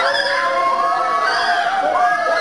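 Many voices of a Pentecostal congregation crying out and wailing at once, a dense tangle of overlapping cries rising and falling in pitch.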